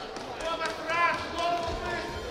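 Short shouted calls from voices in a large sports hall, with one brief rising-and-falling call about a second in.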